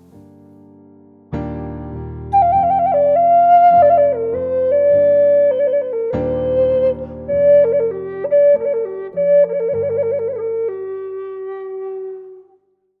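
Native American flute playing a slow melody ornamented with trills, rapid back-and-forth between two notes about two-thirds of the way in, over sustained low accompaniment chords, and settling on a long held final note.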